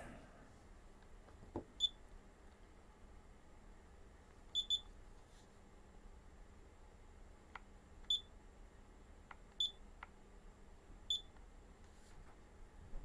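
Short, high electronic beeps, quiet: one about two seconds in, a quick double beep around the middle, then three single beeps about a second and a half apart near the end, with a few faint clicks between them.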